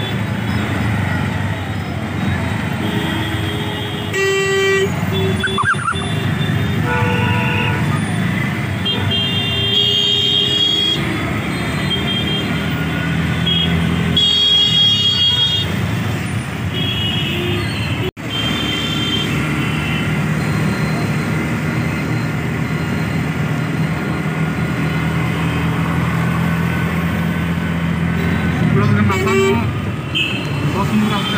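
Heavy street traffic heard from an open auto-rickshaw: a steady rumble of engines with vehicle horns honking several times through it, short toots spread out from a few seconds in.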